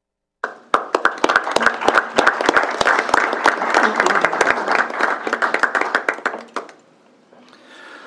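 Applause from a room of people, starting just after the half-second mark and dying away after about six seconds.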